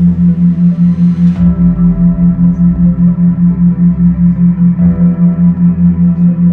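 A theta-wave binaural beat: a loud steady low tone pulsing about five times a second, under an ambient synth pad. A high shimmer in the pad drops away about a second and a half in.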